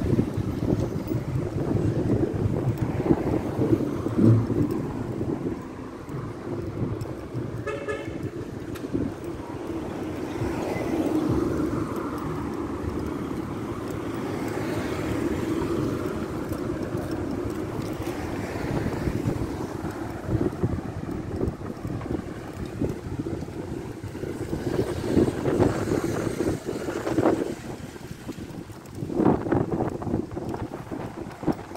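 City street traffic noise, with a short car horn toot about eight seconds in.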